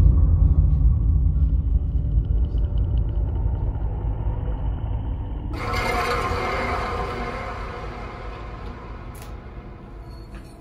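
Deep low rumble that slowly fades. About five and a half seconds in, a wash of higher hiss-like noise comes in suddenly and then dies away.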